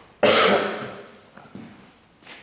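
A man coughs once, loudly, about a quarter-second in, and the sound fades away over the following second.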